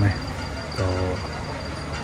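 Crickets chirping in a steady, fast, high-pitched pulse, heard under a short pause in a man's speech.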